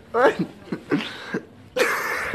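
A person's voice in short non-word bursts, ending in a louder, harsher burst near the end.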